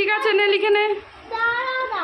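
A child singing two long held phrases, a short break between them about a second in, the second phrase sliding down at its end.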